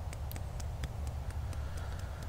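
Fingertips tapping on the top of the head in EFT tapping, a steady run of light taps about four a second, over a low steady rumble.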